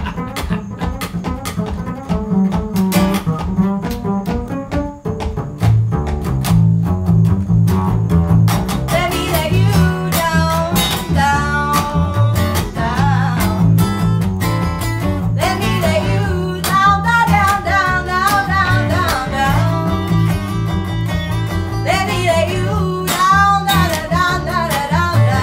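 Acoustic folk trio: an upright bass plucked alone with sharp percussive taps, then acoustic guitar strumming comes in about five seconds in and a woman sings in phrases over the bass and guitar.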